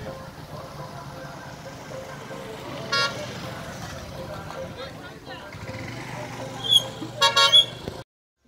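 Street traffic with a vehicle horn tooting briefly about three seconds in. Near the end come several louder short sounds, with voices in the background.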